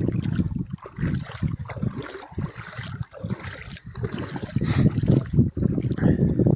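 Wind buffeting an open-air phone microphone: an uneven, gusting low rumble, mixed with the movement of shallow water around people wading.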